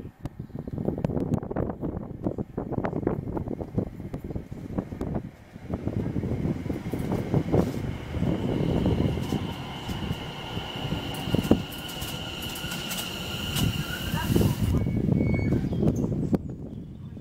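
A Greater Anglia electric multiple-unit passenger train approaching and running past close by, a heavy rumble of wheels on rail with scattered clicks. A steady high whine joins the rumble about halfway through and cuts off shortly before the end.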